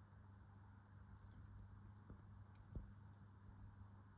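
Near silence: room tone with a steady low hum and a few faint, short ticks in the middle.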